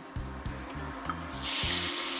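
Diced yellow onion tipped into hot oil in a Dutch oven, a loud sizzle starting suddenly about a second and a half in, over background music with a steady beat.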